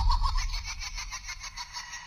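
Trailer sound-design hit: a sudden deep bass boom with a fast, rattling high pulse on top, fading over about two seconds.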